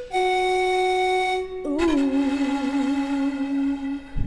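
Music: a flute playing long held notes. The first note is steady; the second, lower one comes in about one and a half seconds in with a wavering vibrato, and the music cuts off suddenly at the end.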